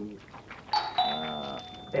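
Two-note doorbell chime (ding-dong): a higher note, then a lower note a moment later that rings on and slowly fades.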